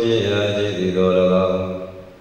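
A Buddhist monk chanting in long held notes, trailing off near the end.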